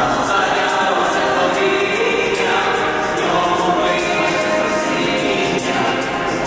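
Small mixed vocal ensemble of men and women singing a hymn in parts into microphones.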